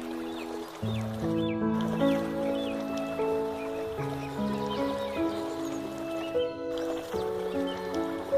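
Slow, gentle instrumental relaxation music on piano, with held notes and soft chords changing every few seconds.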